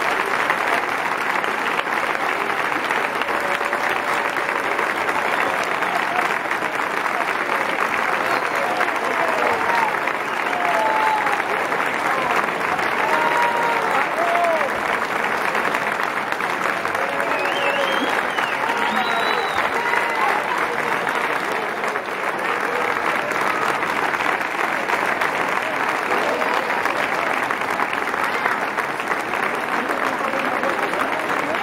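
Large audience applauding steadily, with voices calling out over the clapping through the middle stretch.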